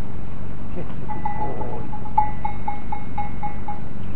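A small livestock bell ringing in a quick, even rhythm, about a dozen strokes over roughly three seconds, over a steady low rumble.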